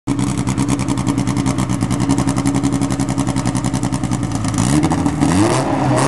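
Nissan SR20 four-cylinder in a 915-horsepower drag car, idling with a lumpy, fast-pulsing beat. Near the end it is revved twice in quick succession, the pitch rising each time.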